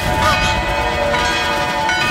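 Dramatic background music built on sustained, bell-like ringing tones, with short sliding sounds over it.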